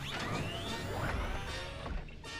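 Animated-series soundtrack: music mixed with noisy sci-fi sound effects over a steady low rumble, with a rising sweep in the first second.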